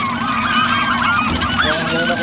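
A flock of birds honking, many short gliding calls overlapping at once.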